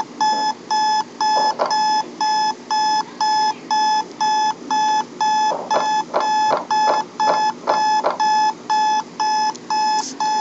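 Electronic alarm clock beeping: a loud, high, steady beep repeating evenly about two and a half times a second.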